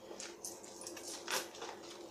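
Soft rustling and handling noises, a few brief scratchy sounds with short pauses between them, like items or packaging being moved about.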